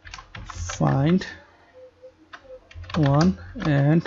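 Computer keyboard typing: a scatter of short keystroke clicks as a method name is typed into a code editor.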